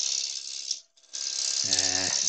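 A turning tool cutting a spinning wood spindle blank on a lathe: a steady, high hissing rattle of the tool on the wood. The whole sound drops out for a moment in the middle.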